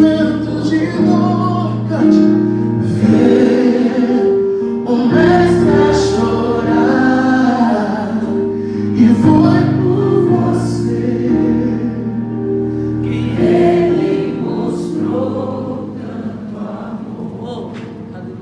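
A gospel vocal group, a man and two women, singing a Portuguese-language worship song in harmony over keyboard accompaniment, getting quieter towards the end.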